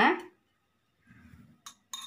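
A woman's voice finishes a phrase, and after a short pause come a faint rustle and two or three light, sharp metallic clicks near the end. The clicks are a utensil or small items against an aluminium pan on a gas stove.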